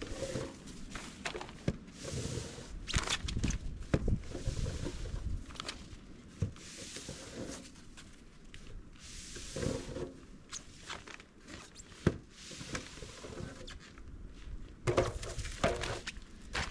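Plastic snow shovel scraping heavy wet snow across plastic sheeting in repeated strokes of a second or two, with knocks as shovel and snow land in a plastic jet sled; one sharp knock about twelve seconds in.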